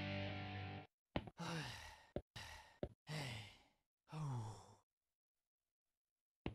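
Background music cuts off just under a second in; then a cartoon voice gives three long sighs, each falling in pitch, with short clicks between them.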